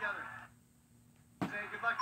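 Game-show voices from a television fade into about a second of near silence. A single sharp click then breaks it, and the voices come back.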